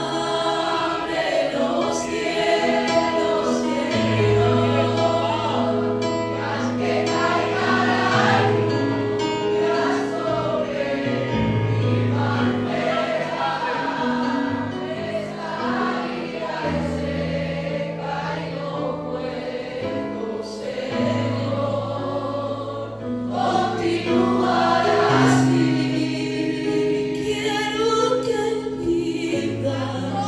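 Gospel-style worship song: a group of voices singing together over held bass notes that change every second or two.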